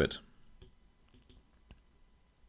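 The tail of a spoken word, then quiet with a few faint clicks, the sharpest about three quarters of the way through.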